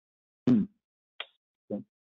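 A brief "hmm" from a voice on a webinar audio line. A faint short blip follows, then a short voiced sound near the end, with dead silence between them.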